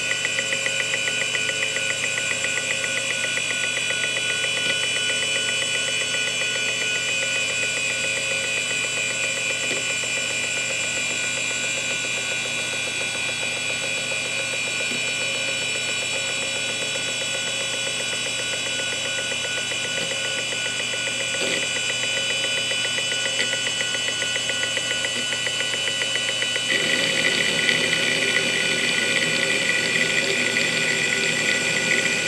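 Quantum Fireball 3.5-inch hard drive running: a steady high-pitched whine with a fast, even ticking over it. About 27 seconds in, the sound gets louder and rougher.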